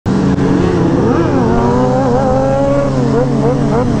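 Sportbike engines running together at speed, one rising and falling in pitch with the throttle, with quick throttle blips in the last second, over wind noise on the helmet microphone.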